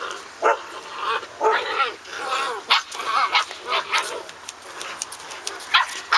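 Six-week-old standard poodle puppies yipping and barking in short, high calls, several at once and overlapping.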